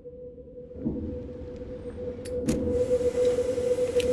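Trailer sound design: a steady held tone that swells in loudness, under soft low pulses about every second and a half to two seconds. Two sharp clicks come a little past two seconds in, and a hiss joins near the end.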